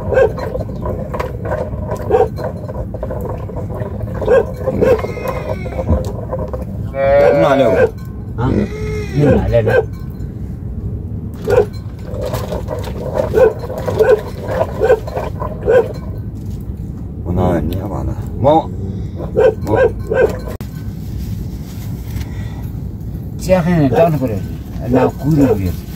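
Sheep bleating several times, long wavering calls that fall in pitch, among short knocks and clatter.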